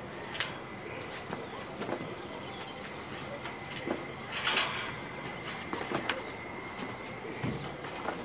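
Scattered light knocks and clanks of a metal lattice tower section being walked upright by hand, with one louder clattering scrape about halfway through.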